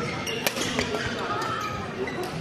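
A badminton racket strikes the shuttlecock once, a sharp crack about half a second in, during a doubles rally.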